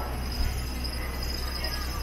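Street ambience: a vehicle's engine running close by as it passes, under a steady high-pitched buzz of insects, with a brief louder knock about half a second in.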